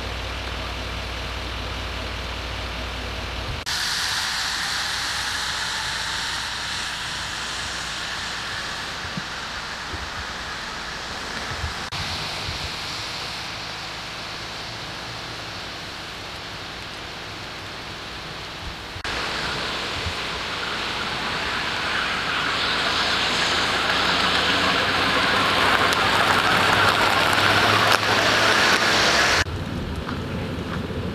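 Steady hiss of rain, broken into sections by abrupt changes and loudest over the last ten seconds or so. A low idling engine hum lies under the first few seconds.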